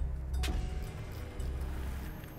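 Deep bass pulses of a tense film soundtrack, a low throb coming back about every second and a half, with one sharp click about half a second in.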